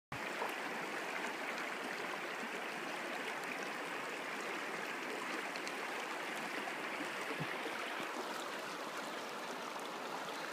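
Shallow river running steadily over stones, a constant even rush of flowing water.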